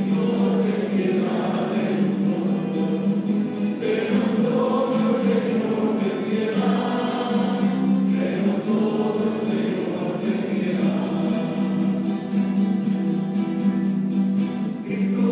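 A church choir singing a hymn, with long held notes that move from pitch to pitch.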